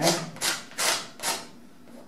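Metal palette knife scraping across the wet oil-painted canvas in four short strokes in the first second and a half, taking off excess oil and paint.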